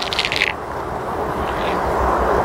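Wooden hive frame scraping up out of the brood box, a quick rasp in the first half second, over a steady rushing hiss.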